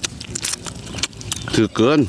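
Close eating sounds: a run of quick, sharp clicks and smacks from chewing and biting into boiled eel, then a short spoken word near the end.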